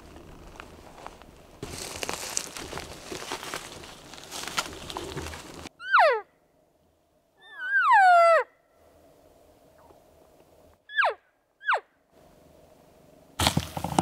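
Elk cow calls blown by a hunter: four mews that fall in pitch. The second is about a second long and rises before it falls, and the last two are short, near the end. They are soft cow calls used to locate a herd by drawing an answer. Before them come a few seconds of rustling from walking through brush.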